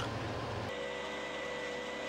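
Steady machinery hum from concrete mixing plant equipment. About two-thirds of a second in, it switches abruptly to a steadier hum with a thin high whine.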